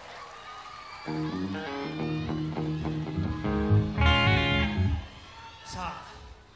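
Greco Les Paul-model electric guitar through an amplifier, playing two sustained chords. The first rings for about two and a half seconds and the second, louder, rings until it stops about five seconds in.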